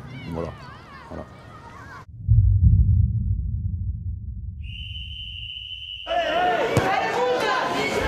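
A word of speech, then a sudden loud low rumble that slowly fades, a steady high-pitched tone held for about a second and a half, and near the end many voices shouting over one another.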